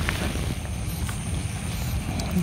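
A steady low rumble with a faint, thin high tone above it.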